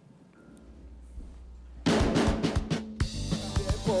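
A live rock band starts a song. After a couple of seconds of only a low hum, the drum kit plays a fill from about two seconds in, and the electric guitars and bass join about a second later, with the singer's first word just at the end.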